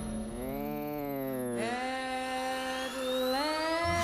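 Electronic hover-and-flight whir of an animated flying robot, one pitched tone that swells up and falls back, then steps up and holds before rising again near the end. A thin whistle climbs steadily underneath in the second half.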